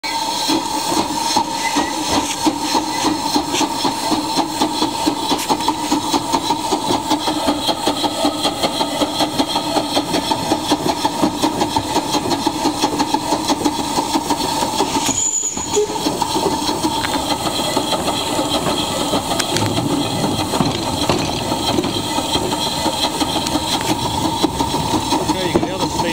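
Narrow-gauge steam locomotive under way, heard from its footplate: a fast, even beat of about four a second over a steady hiss of steam. The beat grows less distinct after about fifteen seconds.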